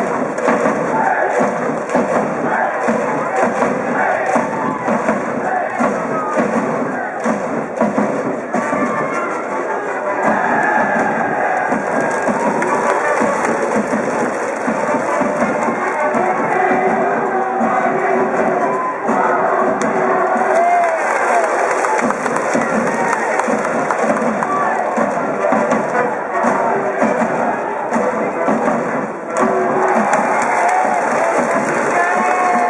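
A school brass band in the stands plays a baseball cheering song, with the massed voices of the student cheering section chanting along. The music runs loud and unbroken, with a steady beat.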